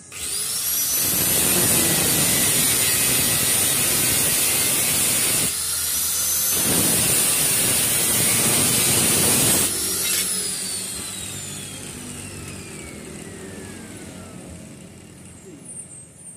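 Handheld angle grinder with a cutting disc spinning up and cutting through steel angle iron. It eases off for a moment about five seconds in, cuts again, and is released near ten seconds, its whine falling as the disc spins down.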